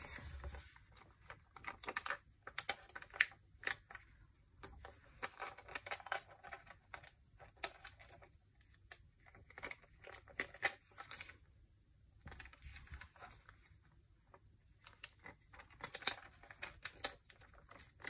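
Small stickers being peeled from a sticker sheet and pressed onto planner paper: irregular small clicks, taps and paper rustles, with a brief quieter spell about two-thirds of the way through.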